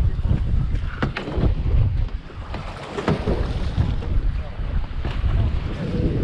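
Wind buffeting the microphone on an open boat deck, with water washing against the hull, and a few short knocks spread through.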